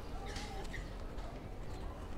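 Footsteps on stone paving over steady outdoor background noise.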